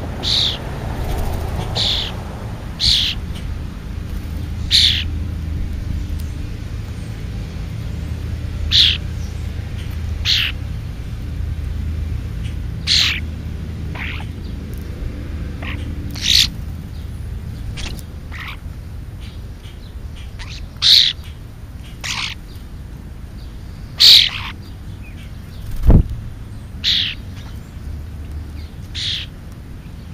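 A bird giving short, high chirps over and over at uneven gaps of one to a few seconds, over a steady low rumble. A single sharp knock comes near the end.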